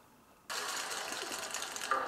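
Half a second of near silence, then the playback of a live concert recording starts suddenly with a steady, even noise, and musical tones come in near the end.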